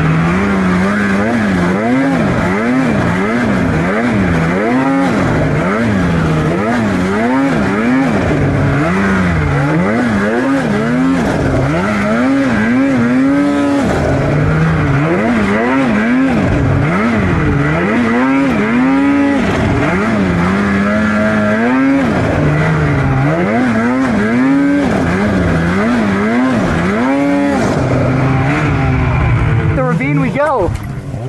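Polaris 850 two-stroke mountain snowmobile engine revving hard, its pitch swooping up and down about once a second as the throttle is worked while the sled pushes through deep powder.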